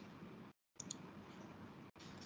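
Near silence: faint hiss of an online meeting's audio line, cutting out briefly twice, with a couple of faint clicks about a second in.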